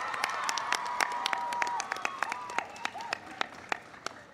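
Audience applauding. The clapping is dense at first and thins to scattered claps toward the end, with a few long, high calls from the crowd over it.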